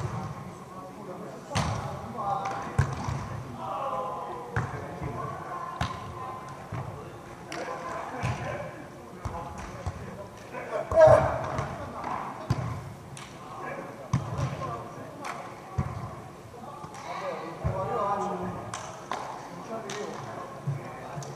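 Beach volleyball struck again and again by players' hands, sharp slaps that ring in a large hall, with players' shouts and calls in between; the loudest moment comes about halfway through.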